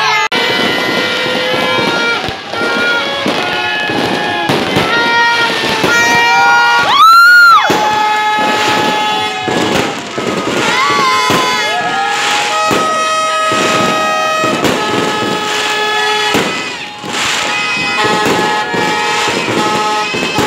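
Fireworks bursting and crackling amid many horns tooting at different pitches. About seven seconds in, the loudest sound is a single tone that swoops up and back down over about a second.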